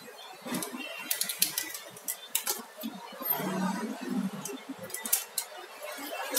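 Scattered small clicks and taps as the circuit-board strip and its connectors are handled and pulled off the edge of an LCD TV panel, with a short stretch of rubbing and handling noise around the middle.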